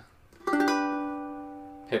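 Ukulele G chord strummed once about half a second in, its notes ringing together and fading slowly.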